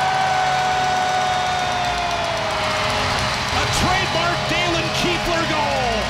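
Arena goal horn sounding a long steady tone for a home-team goal, its pitch sagging about two and a half seconds in, with a second falling blast near the end, over the crowd cheering.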